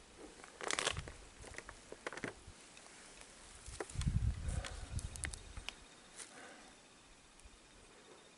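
Faint, scattered crackling and rustling, with a cluster of low thumps about four seconds in.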